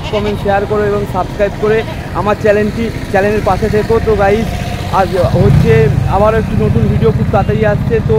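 A man talking in Bengali over a vehicle engine running at idle, a steady low pulsing rumble that grows louder about five seconds in.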